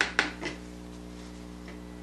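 Three quick clinks and taps of small hard painting supplies being handled in the first half second, over a steady low hum.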